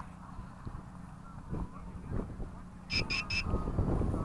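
Three short high-pitched electronic beeps, about 0.2 s apart, from the armed altimeter on board a high-power model rocket, heard over low wind rumble on the microphone.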